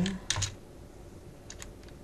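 Computer keyboard keystrokes typing a short word: a couple of clicks just after the start, then a few more about a second later.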